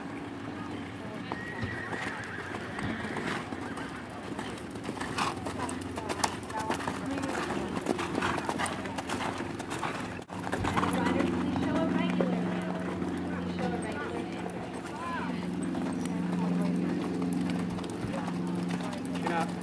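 Hoofbeats of a show-jumping horse cantering on the arena's sand footing, with voices in the background. From about ten seconds in, a steady low hum comes in under them.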